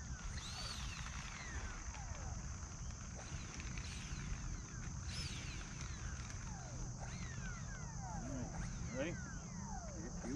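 Faint whine of an E-flite A-10's 64 mm electric ducted fans, gliding up and down in pitch as the model moves on the runway. A steady high insect drone, like crickets, runs under it.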